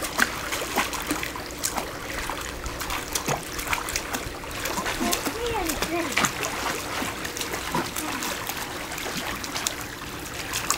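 Small, irregular water splashes and lapping as a toddler in an inflatable swim ring paddles with her hands in a pool.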